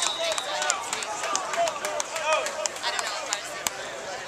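Many players' and coaches' voices calling and chattering at once, indistinct, with scattered sharp clicks.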